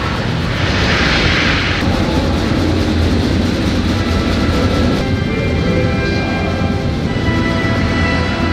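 Deep, steady rumble of a rocket launch played back with music, with a burst of hiss about half a second in lasting about a second. Sustained musical notes come in over the rumble about five seconds in.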